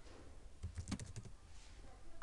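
A short run of faint computer keyboard keystrokes, several clicks in quick succession about a second in.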